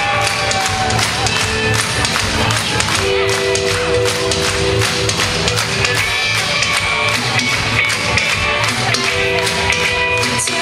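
A live indie-pop band plays an instrumental passage with a steady drum beat. Held notes come in about three seconds in.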